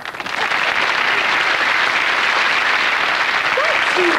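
Sitcom studio audience applauding, swelling up within the first half second and then holding steady.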